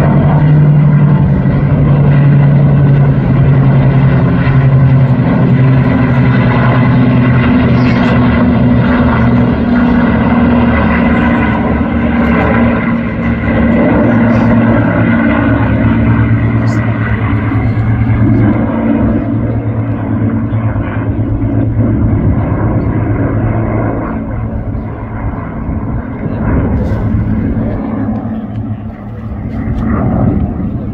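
Military aircraft flying overhead: an F-35A Lightning II jet in formation with three propeller warbirds, heard as a loud, steady engine drone with a low hum. It eases off in the last several seconds.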